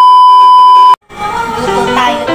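TV colour-bars test-tone beep used as an editing transition effect: a loud, steady, high beep held for about a second, then cut off sharply. Music comes in just after.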